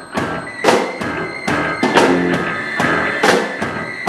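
A live rock band playing: electric bass, electric guitar and drum kit, with drum hits keeping a steady beat.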